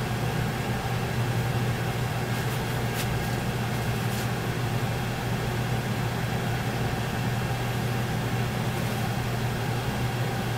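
A steady low hum with an even hiss, with a few faint clicks in the first few seconds.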